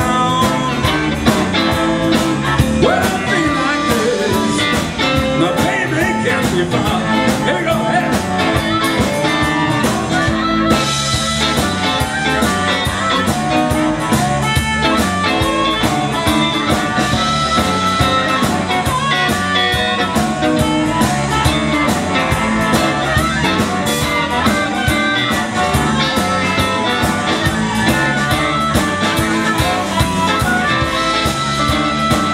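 A live blues-rock band plays a harmonica solo over electric guitar, bass guitar and drums, with a steady beat.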